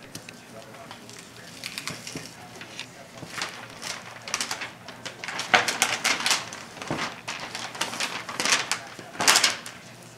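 Butcher paper crinkling and rustling in irregular bursts as a raw deer hind quarter is handled and turned on it during deboning, loudest about halfway through and again shortly before the end.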